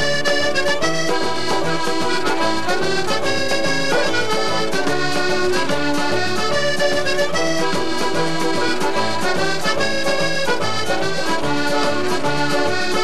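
Instrumental dance tune led by a button accordion, with a steady, even beat from the backing band's bass and drums.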